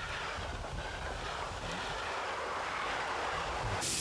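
Running noise of a moving passenger train heard from an open coach window: a steady rush and rumble of the wheels on the track. Near the end the sound changes abruptly to a brighter, steady hiss.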